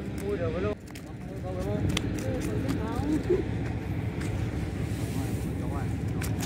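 Wind buffeting the microphone as a steady low rumble, with faint voices in the background and a few light taps and rustles.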